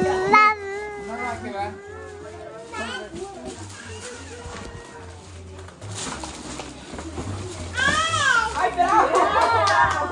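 Excited children and adults chattering and exclaiming over one another, with a loud high-pitched squeal about eight seconds in, and music playing underneath.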